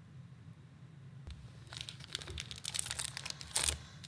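Foil wrapper of a Magic: The Gathering draft booster pack crinkling as it is picked up and torn open. Quiet at first, the crackling starts about halfway through and is loudest near the end.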